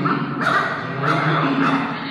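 Cartoon dogs barking and snarling at each other in a quick run of barks about every half second, from an animation soundtrack played through a loudspeaker in the room.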